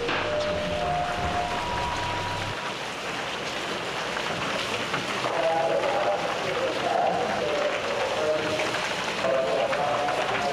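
Steady hiss of rain, with the low rumble of a moving car heard from inside its cabin for the first two and a half seconds, after which the rumble stops and the rain continues. Short musical tones sound over it, a few rising notes at the start and a busier cluster from about halfway.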